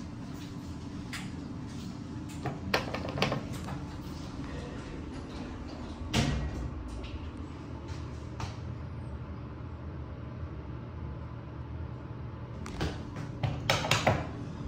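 Inside an Otis traction elevator car that has stalled instead of travelling: a steady low hum with scattered clicks, a thump about six seconds in, and a cluster of button clicks near the end.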